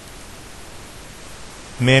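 Steady, even background hiss from the recording, with a man's voice beginning to speak near the end.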